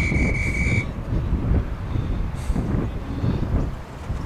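A single high-pitched electronic beep from an interval timer, lasting just under a second at the start, marking the switch between a Tabata work interval and rest. Wind rumbles on the microphone throughout.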